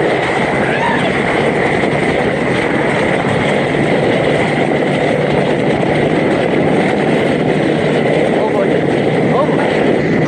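Steady rush of wind buffeting the microphone and water spraying around a towable tube being pulled at speed over the water.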